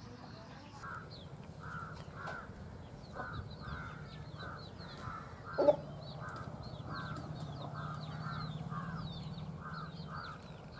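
Birds calling: a short harsh call repeated about twice a second, with faint high chirps throughout, over a low steady hum. One louder sound comes just past halfway.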